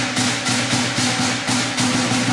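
Chinese lion dance percussion playing a driving beat: a large drum with clashing cymbals, about three strokes a second.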